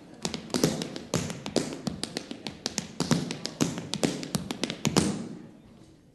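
Tap shoes striking a hard stage floor in an unaccompanied tap-dance break: a quick, irregular run of sharp taps and heavier heel and toe strikes. The taps stop about five seconds in.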